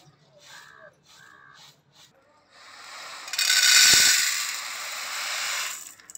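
Faint, rhythmic shaking of split black gram in a woven winnowing tray. Then, from about two and a half seconds in, a loud rattling rush of the grain pouring off the tray into an aluminium pot, with a dull knock in the middle, lasting about three seconds and stopping just before the end.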